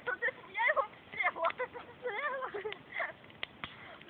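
People talking quietly in short phrases, with a couple of sharp clicks near the end.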